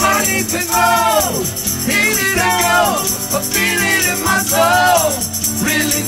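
Live acoustic band performance of an indie-pop song: strummed acoustic guitar and a shaker keeping time under male and female voices singing long, sliding held notes.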